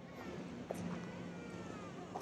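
Faint outdoor background with a distant animal call whose pitch slides, heard briefly in the middle, over a steady low hum.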